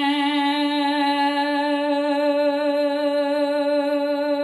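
A woman's trained classical singing voice holds one steady sung note with a light vibrato. This is a vocal exercise in opening a narrow, twangy "squillo" tone toward a more open sound, balancing brightness (chiaro) and roundness (scuro).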